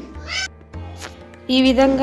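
A short high-pitched rising call from an animal, over a steady low hum; a woman's voice comes in about one and a half seconds in.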